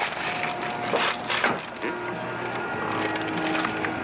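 Steady car-cabin hum with the crinkle of plastic wrapping being handled, sharpest about a second in.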